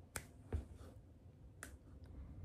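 Three faint, sharp clicks: two close together near the start and a third about a second later.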